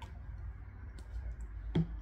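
Small clicks from sipping and swallowing from a ceramic mug over a low steady room hum, with a louder knock near the end as the mug is set down.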